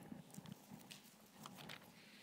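Near silence with a few faint ticks and light rustles as the pages of a Bible are leafed through on a lectern.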